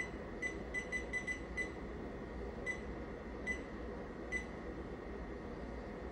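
A digital bench power supply beeping at each press of its front-panel buttons as its output voltage is stepped down to 6 V. There are about ten short, high beeps: a quick run in the first two seconds, then three more spaced about a second apart.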